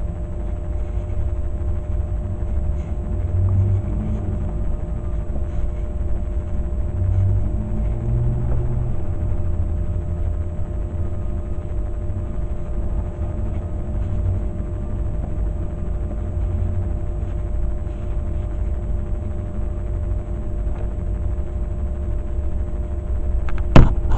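A steady low rumble with a faint hum, and one sharp knock near the end.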